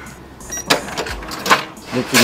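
Shop checkout register and card payment terminal: a short high electronic beep about half a second in, then a series of sharp clicks and short rattles as the transaction goes through.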